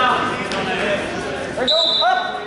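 Overlapping shouts and chatter of coaches and spectators echoing in a gymnasium during a wrestling match. A high steady tone starts near the end.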